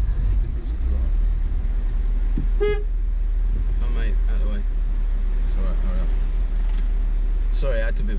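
Car engine running, heard from inside the cabin as a steady low rumble. About two and a half seconds in there is one short horn toot, and low voices are heard now and then.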